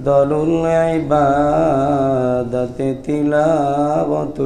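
A man chanting a hadith in Arabic in melodic sermon style, holding long notes with a wavering pitch and a few short pauses between phrases.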